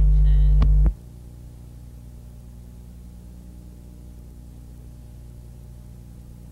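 Electrical mains hum on the recording. A very loud, steady hum cuts off suddenly about a second in, leaving a quieter steady hum.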